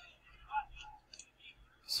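Faint, low voices, heard quietly and in short scattered bits, from the football clip playing back.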